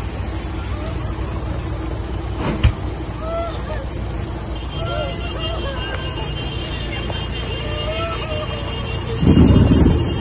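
Heavy rain falling steadily on the road, with distant voices calling, a single knock about two and a half seconds in, and wind buffeting the microphone near the end.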